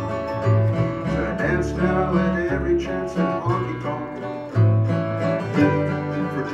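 Live acoustic band playing the song instrumentally: a strummed acoustic guitar, an upright bass plucking a low note about once a second, and a small plucked string instrument picking melody.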